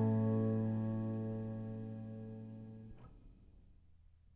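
The final guitar chord of a song ringing out and slowly fading away, then damped with a faint click about three seconds in, leaving only a quiet tail.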